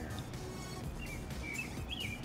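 Steady low background noise with a few short, high chirps in the second half.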